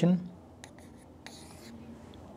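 Writing on a board: a few faint short taps and scratches, then a longer stroke about a second and a half in.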